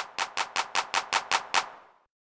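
Sampled electronic hand clap from FL Studio triggered in a steady run, about four or five claps a second, growing slightly fainter before stopping near the end.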